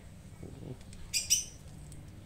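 Two quick, sharp clicks from a manual rotary air-rifle pellet magazine being handled as pellets are pressed into its chambers.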